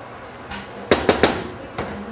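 A wooden spatula knocking against the rim and side of a stainless steel pot while spreading rice: a quick run of sharp knocks starting about half a second in.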